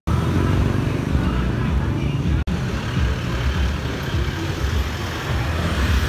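Street traffic: motorcycles and other vehicles running along a road, a steady rumbling noise with a momentary break about two and a half seconds in.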